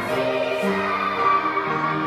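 A group of children singing a musical theatre song together, with musical accompaniment, in held sung notes.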